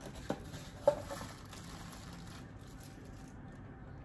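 Statue packaging being handled and unpacked: two sharp clicks in the first second, the second louder, with faint rustling of plastic wrap and foam that dies away about halfway through.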